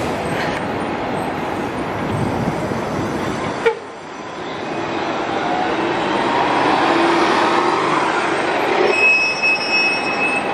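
City transit bus passing close on a street, its engine running with tyre and traffic noise, with a sharp knock about four seconds in. A high steady squeal comes in near the end.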